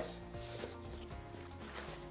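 A CPAP machine rubbing against the padded fabric of a travel briefcase compartment as it is lifted out, over faint background music.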